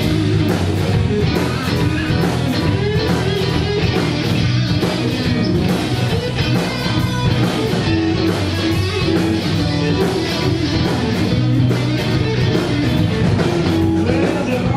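Live blues-rock band playing an instrumental passage: electric guitars over bass guitar and a drum kit keeping a steady beat.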